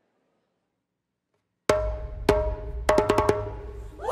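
Near silence, then a youth drum troupe on djembes and marching drums opens its act about a second and a half in: a loud unison hit that rings on, a second hit, then a quick run of sharp strikes near the end.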